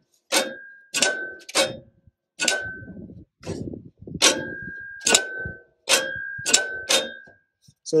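Electric PTO clutch on a Cub Cadet HDS 2135 riding mower clicking about nine times, sharp metallic clicks with a short ring, as the magnet pulls in and releases the clutch plate each time the PTO is switched. The audible click is a sign that the PTO clutch itself is working.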